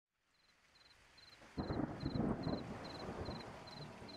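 Crickets chirping in an even rhythm of about two short high trills a second over a faint hiss fading in, as a night ambience. About a second and a half in, a sudden rumble of thunder breaks in and slowly dies away.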